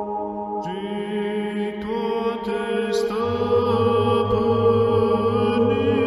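Background music: a slow, chant-like ambient piece of sustained, layered tones. New layers enter about a second in, and a low drone joins about halfway.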